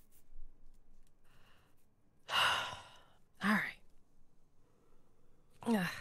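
A person sighing heavily: a long breathy exhale about two seconds in, then a short grunt that drops in pitch.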